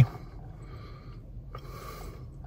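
A person's breath out through the nose, a short hiss about one and a half seconds in, over a faint steady low hum.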